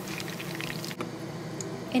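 Meatballs sizzling and crackling in hot frying oil. About a second in, the sound changes abruptly to milk being poured in a steady stream into a saucepan.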